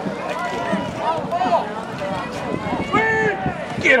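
Spectators' voices overlapping, calling out and shouting as a football play runs, with one long held shout about three seconds in and a shout of "Get…" at the very end.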